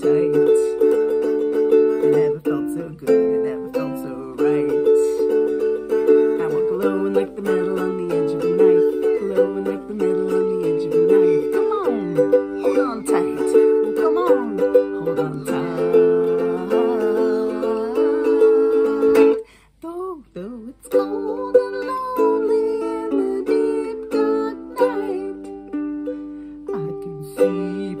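Ukulele strumming chords in a steady rhythm. The strumming breaks off for about a second and a half some twenty seconds in, then picks up again.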